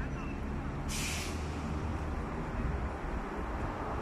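Low, steady city street rumble, with one short sharp hiss, like a release of air, about a second in.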